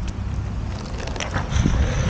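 Longboard wheels sliding sideways across asphalt in a toe-side slide, with the rider's slide-gloved hand scraping the road. A gritty scraping hiss starts about a second in and grows loudest near the end, over a steady low rumble.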